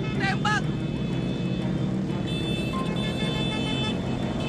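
Road noise from a pack of motorbikes riding together, engines running in a steady low rumble, with voices in the crowd and two short high-pitched cries about a quarter and half a second in.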